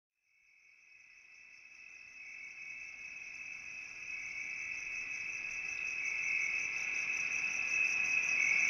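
A steady, high-pitched insect trill with a fast pulsing upper note, fading in from silence about a second in and growing louder.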